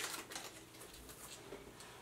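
Faint crunching and chewing of a white-chocolate-coated wafer bar as it is bitten, a few small crisp clicks over a quiet room.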